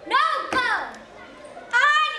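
Children's voices: a high-pitched called-out phrase at the start, and another starting near the end.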